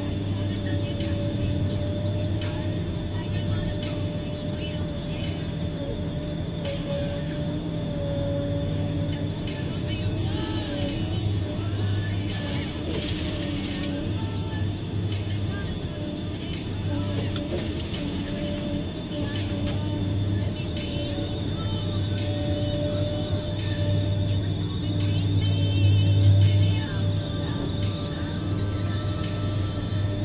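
A forest harvester's engine and hydraulics running steadily, with a low drone and a constant high whine as the Ponsse H8 harvester head works the logs. It swells louder for a moment late on.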